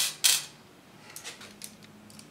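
Two sharp metallic clicks at the start, about a quarter second apart, then a few faint light clicks: small hard-drive mounting screws and a screwdriver being picked up and handled.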